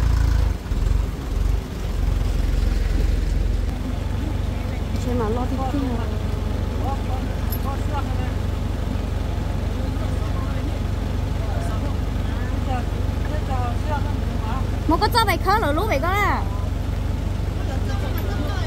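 Large diesel farm tractor engine idling with a steady low rumble that dips briefly in the first couple of seconds. A voice calls out loudly about fifteen seconds in.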